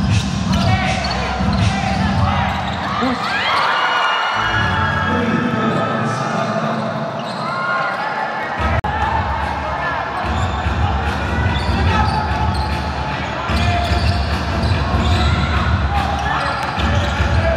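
Basketball being dribbled on a hardwood court during live play, with players' voices calling out over it.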